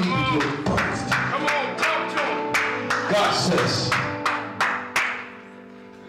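A church keyboard holds sustained chords under rhythmic hand clapping, about three claps a second, with voices calling out. The clapping stops about five seconds in.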